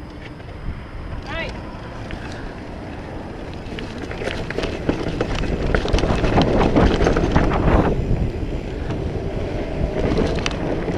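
Mountain bike rolling fast down a rocky dirt trail: tyres crunching over stones and the bike rattling. The noise builds a few seconds in and is loudest near the middle, with wind rushing on the microphone.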